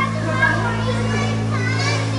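Young children's voices chattering indistinctly in a busy indoor space, over a steady low hum.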